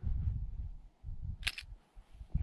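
Uneven low rumble of wind buffeting the microphone, dying away about a second in, then a single short, sharp click.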